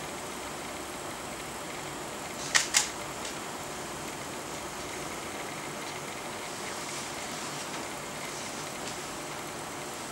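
Steady fan-like hiss of room noise, with two sharp clicks in quick succession about two and a half seconds in, then a fainter click.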